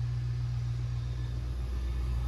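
A steady low rumbling hum, with nothing else standing out.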